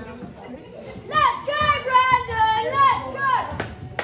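High-pitched children's voices shouting and chanting from a wrestling crowd, starting about a second in, with drawn-out sing-song calls. A single sharp knock sounds near the end.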